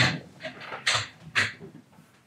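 Three short swishing rustles as a person gets up off a padded treatment table and moves about: one at the start, one about a second in, and one half a second later.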